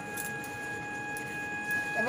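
Thick jujube pickle simmering in a steel wok while a wooden spatula stirs it, with a few faint scrapes, under a steady high-pitched tone.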